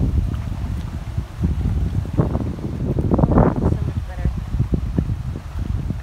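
Wind buffeting the microphone: a loud, uneven low rumble that swells and eases, with faint voices now and then.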